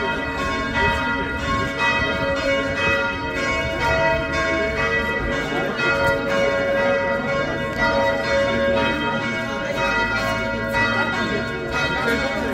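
Several church bells ringing together in a continuous peal, their strikes overlapping.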